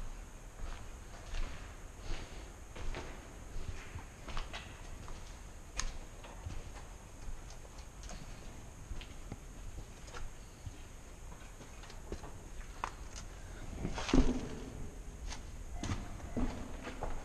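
Footsteps on a debris-strewn mill floor, irregular knocks about once a second, with one louder bump about fourteen seconds in.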